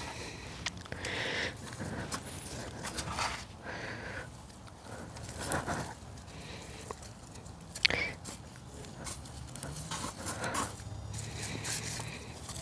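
Gloved hands pushing and pressing loose potting soil around a replanted plant in a plastic pot: soft, scattered rustling and scraping of soil and leaves, with one sharp click about eight seconds in.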